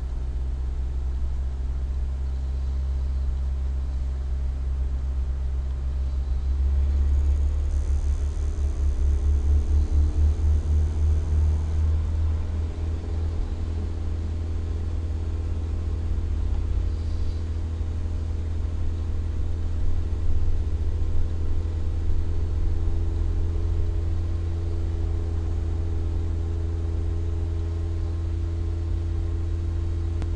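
Nissan Almera N16's four-cylinder petrol engine running steadily, held at about 2,000 rpm, with a slight swell in level about seven seconds in.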